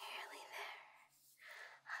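A woman whispering close to the microphone, in breathy phrases with no voiced pitch.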